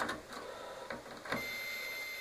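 Digital multimeter's continuity buzzer giving one steady, high beep that starts a little over a second in, after a few faint clicks of the test probes. The beep means the probed conductor of the microwave's power cord is intact.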